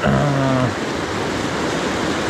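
Fast mountain stream rushing over rocky rapids close by: a steady wash of water. A man's short 'un' opens it.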